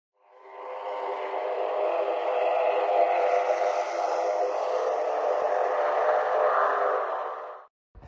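Channel intro soundtrack playing under a logo animation: a dense, steady sound with many held tones that fades in over the first second and cuts off suddenly just before the end.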